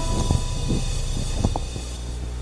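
Handling noise from a handheld vocal microphone: a steady low rumble with a few soft knocks, two of them close together about a second and a half in, as the singer moves into a bow.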